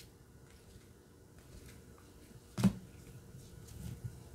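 Trading cards being handled and flipped through in gloved hands, faint card-on-card rustling with one sharp tap a little over halfway through.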